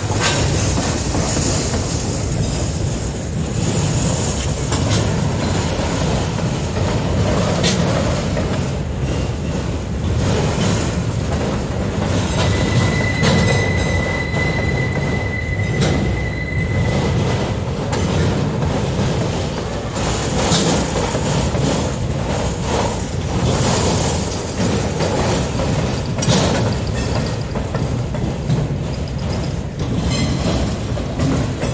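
Freight cars of a long train rolling past close by: a steady loud rumble of steel wheels on rail with scattered clicks and knocks. About twelve seconds in, a single high steady wheel squeal sounds for about four seconds.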